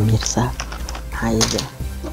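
Small plastic clicks and crackles of tablets being pressed out of a blister pack, heard under a man's speech and a low background music bed.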